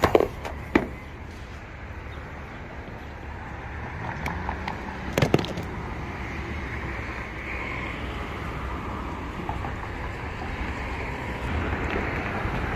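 A few sharp plastic clicks and knocks from handling a five-head rotary shaver, the loudest about five seconds in, over a steady low outdoor rumble.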